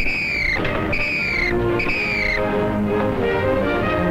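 A high whistle-like signal tone sounds three times, each note short and falling slightly in pitch, about a second apart. Then orchestral music with sustained notes comes in.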